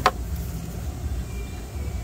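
A single sharp click as a retaining tab on the radiator fan assembly is pulled back, followed by a low steady rumble.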